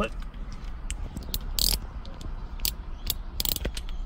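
Irregular sharp clicks and light clatter of a small hand tool being picked up and handled, with the loudest clicks about one and a half seconds in and near the end.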